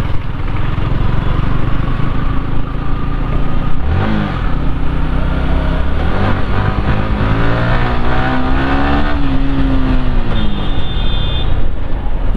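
Sport motorcycle engine heard from the rider's own bike, pulling through the gears. The revs sweep up about four seconds in, then climb steadily for about three seconds and fall away at a gear change near the end.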